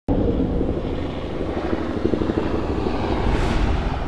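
Helicopter rotor sound effect: a steady low chopping rumble that starts abruptly, with a rising whoosh near the end.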